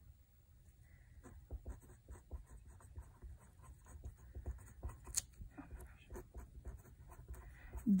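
A pencil writing on a paper workbook page: a run of faint, quick scratching strokes, with one sharper tick about five seconds in.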